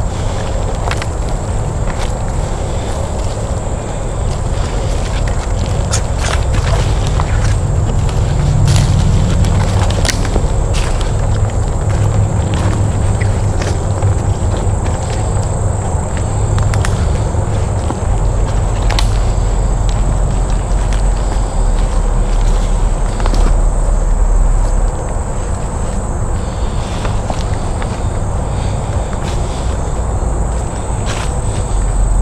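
Footsteps through dry leaf litter and sticks on a forest floor, with scattered sharp crunches and snaps, over a steady low rumble on the microphone.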